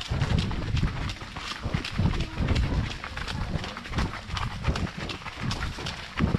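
Hooves of a ridden horse striking a gravel trail at a brisk pace: a steady run of low thuds with sharp crunching clicks of gravel.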